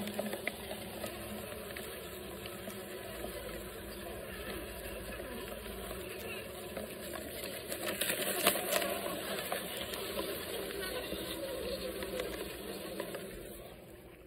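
Hundreds of bumblebees buzzing together inside a plastic collection bottle, a steady, wavering hum that the beekeeper calls so loud. It gets louder about eight seconds in, then fades near the end.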